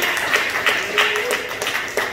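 Hand clapping in a steady rhythm, about three claps a second.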